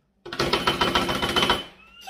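Rapid hand clapping: a fast run of sharp claps that starts suddenly and lasts just over a second.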